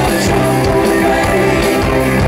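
Live rock band playing loudly on stage, with keyboard and a steady beat of cymbal hits.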